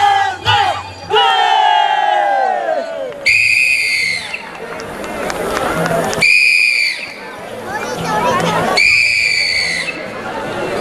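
A chorus of voices shouting out together in long falling cries, followed by three steady whistle blasts about a second long and two and a half seconds apart, with shouting between them.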